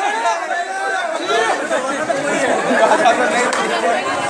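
Crowd of men, many voices talking over one another in a continuous babble.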